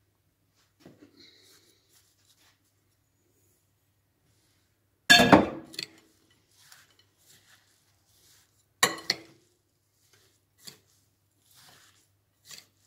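Metal spoon knocking and clinking against a glass mixing bowl while stirring a grated-pumpkin filling. Two loud knocks with a short ring, about five and nine seconds in, and faint taps in between.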